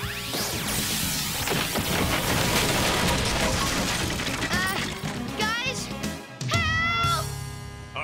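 Cartoon sound effects over music: a crackling energy-beam blast with crashing destruction, followed later by a run of sweeping, rising and falling electronic tones.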